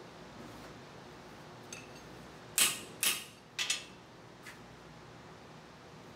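A steel horseshoe being worked on an anvil while it is shaped to fit the horse's foot: three sharp metallic clangs with a ringing tail, about half a second apart, starting a little past halfway. A lighter ringing tap comes before them and a faint tap after.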